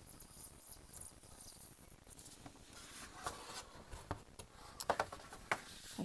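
X-Acto craft knife cutting through foam board and its tough paper backing, the blade pressed hard along a scored line: faint scratching with scattered small clicks, busier after the first couple of seconds.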